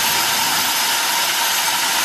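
Man-made rock geyser erupting: a steady, even hiss of spraying water.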